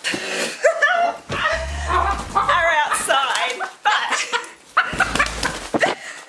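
A small dog whining and yipping excitedly, with a hen's wings flapping in a commotion near the start.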